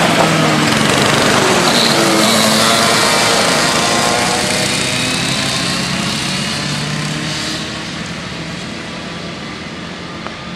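Two Honda cadet karts' small single-cylinder four-stroke Honda GX160 engines running at speed. The two engine notes shift in pitch against each other as the karts pass close, then fade steadily from about four seconds in as the karts pull away round the track.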